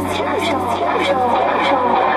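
Psychedelic chill-out electronic music: wavering, gliding voice-like tones over regular high ticks, with the deep bass dropping out just as it begins.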